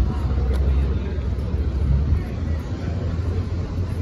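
Busy street ambience: a steady low rumble, heaviest over the first two seconds, with people talking.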